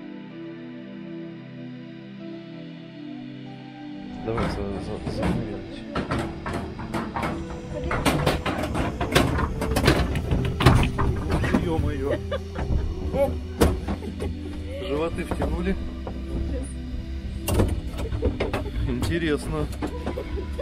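Background music for the first four seconds, then the machinery of a cable car boarding station: a steady low rumble with many sharp clanks and knocks as the cabins run through the station.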